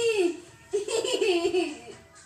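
High-pitched laughter in two bursts, the second starting less than a second in.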